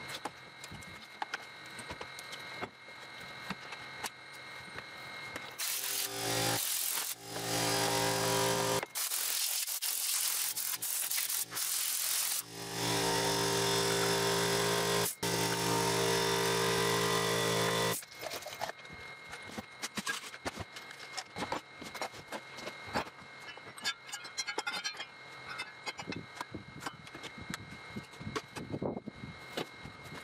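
A small power tool's motor run in several bursts of a few seconds, a steady hum with many overtones that cuts off and starts again. Before and after it come light clicks and knocks of tools being handled and stowed.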